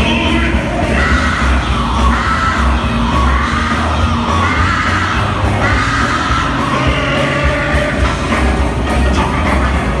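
Live band playing loudly: electric guitars over heavy bass and drums, with voices from the crowd.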